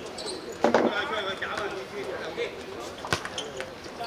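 A football being kicked: two sharp thuds, one under a second in and one about three seconds in, with players shouting in the background.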